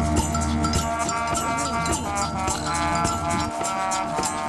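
High school marching band playing its field show: held brass chords over the front ensemble's mallet percussion, with quick, regular percussion strikes.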